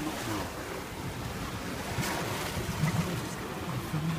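Steady rush of waves and water along a sailing yacht's hull as it sails through choppy sea, with some wind. It is heard from under the sprayhood, sheltered from the direct wind buffeting.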